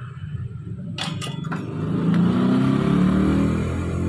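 A motor's low hum that swells and shifts in pitch for about a second and a half in the second half. A few clinks of wires and a metal tester probe being handled come about a second in.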